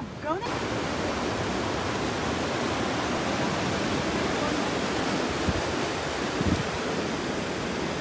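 Steady rushing of a mountain river, coming in abruptly about half a second in.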